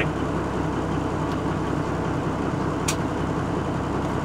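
Diesel engine of a 1990 Peterbilt 379 dump truck idling steadily, heard from inside the cab, with a short click about three seconds in.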